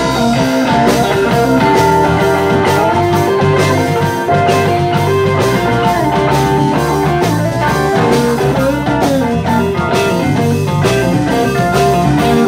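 Live rock band playing an instrumental passage: electric guitar, electric bass, keyboards and drum kit.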